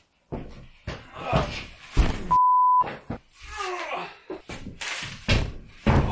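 Knocks and thumps of a large, heavy plasterboard sheet being handled, with muttered words, and a steady half-second censor bleep a little over two seconds in.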